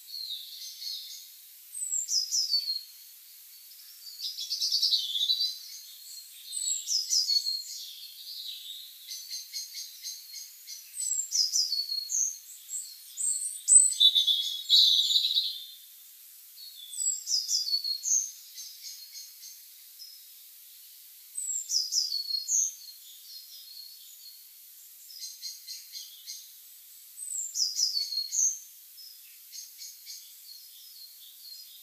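Songbirds singing: short high-pitched song phrases, each falling in pitch, recurring every few seconds, with softer chirps in between.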